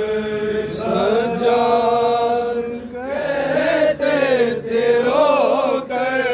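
Group of men chanting a Muharram noha (Shia lament) together, in long drawn-out, wavering phrases with short breaks for breath.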